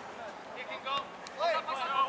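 Players' voices calling and shouting across an open field over a steady background hiss, starting about half a second in and growing louder near the end.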